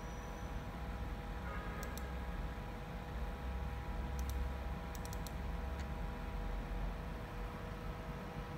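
A few sharp computer-mouse clicks, singly and in quick groups, about 2 s in, around 4 s and in a cluster near 5 s, over the steady hum of the test bench's cooling fans with faint steady whining tones in it.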